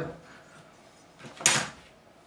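A single short sliding scrape about a second and a half in, from a tool being picked up and handled on the workbench.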